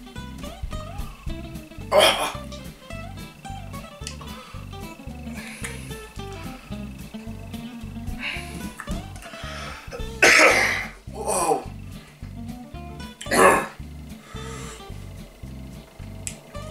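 Background music with a steady beat runs throughout. A man's brief exclamation comes about two seconds in, and three coughs come in the second half, set off by the heat of the scotch bonnet pepper jelly he has just eaten.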